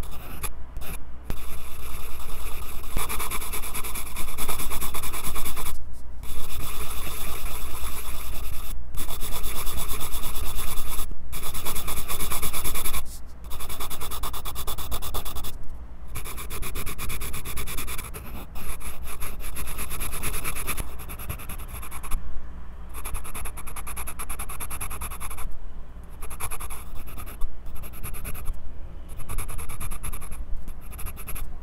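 Graphite pencil scratching across sketchbook paper, picked up very close by a lapel mic clipped to the pencil itself. The strokes run almost continuously, broken by brief pauses when the pencil lifts, louder in the first half and somewhat softer in the second.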